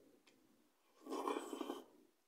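A person slurping a forkful of cheesy Pot Noodle into the mouth, one short slurp about a second in.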